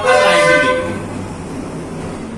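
A vehicle horn sounding one long, steady blare that stops under a second in, leaving a steady background hiss.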